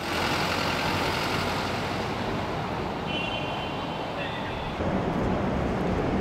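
A prison van driving close past amid steady street traffic noise, with voices faintly under it.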